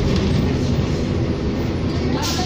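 Steady low rumble inside a moving 2007 New Flyer D40LFR diesel city bus: engine drone mixed with road noise in the passenger cabin.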